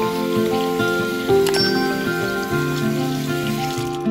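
Tap water running into a bathroom basin and over hands being rinsed, a steady hiss that cuts off suddenly near the end, under background acoustic guitar music.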